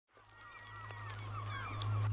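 Many short bird calls that rise and fall in pitch, over a steady low hum, all fading in from silence.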